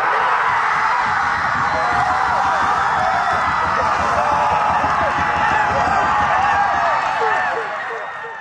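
Crowd and players cheering and shouting together in celebration of a goal, many voices screaming at once, fading away near the end.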